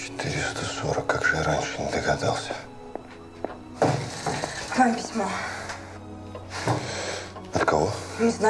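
Spoken dialogue in three short stretches over quiet, steady background music.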